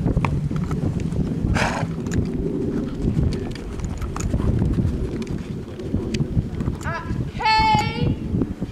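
Wind rumbling on the microphone over the muffled footfalls of a horse trotting on a sand arena. Shortly before the end comes a short, high-pitched call.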